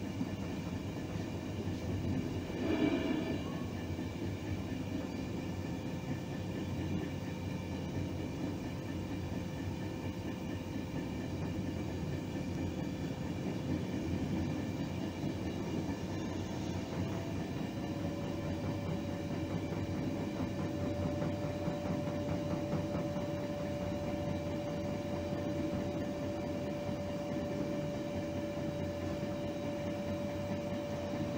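A train running along the track, heard from inside: a steady rumble of wheels on rail with a faint whine that steps up slightly in pitch and grows stronger past the halfway point. A brief louder clatter comes about three seconds in.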